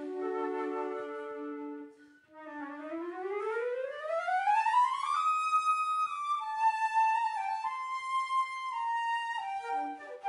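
A flute and clarinet quartet playing. A held chord breaks off about two seconds in; after a short gap, one instrument rises in a long, smooth glissando over about two and a half seconds and settles into held melody notes over the ensemble.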